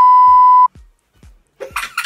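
Loud, steady 1 kHz test-tone bleep over colour bars, censoring the answer, cutting off sharply under a second in. After a short silence, a girl's high-pitched laughter starts near the end.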